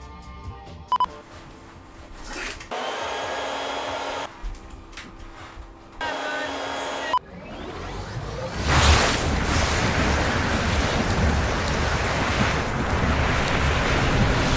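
Film sound-design effect for a genie's magical energy blast: a couple of short steady hums, then a rushing noise that swells up about halfway through and stays loud and dense.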